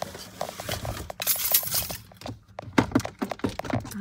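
Handling noise close to the microphone: rustling and a quick run of small clicks and knocks as hands rummage for a phone mount, with a louder rustle about a second in.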